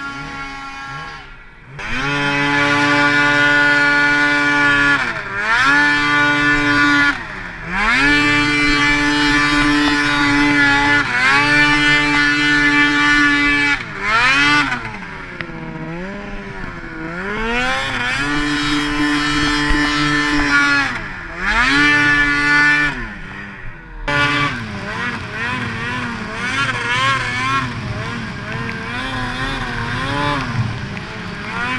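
Snowmobile engine revving hard under heavy throttle, the pitch climbing and holding high, then dropping sharply several times as the throttle is let off and opened again. In the last few seconds it runs at lower, unsteady revs.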